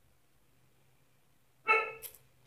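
A single short, loud dog bark about a second and a half in, over a faint low hum.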